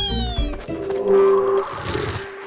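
A cartoon seal pup's high, whimpering cry, falling steadily in pitch and fading about half a second in, over background music. A held music note and a soft whoosh follow.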